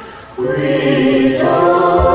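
A choir singing sustained, steady notes with accompaniment: after a brief pause the voices come in on a new held chord about half a second in.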